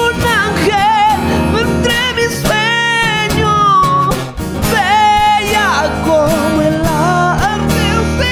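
Two acoustic guitars playing under a lead vocal that sings long, wavering notes.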